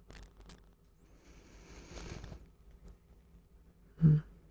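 Quiet, close-up fabric rustling, swelling for about a second and a half in the middle, with a few faint clicks before and after.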